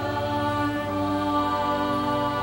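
Slow responsorial psalm music, with long held notes that move to a new pitch every second or so.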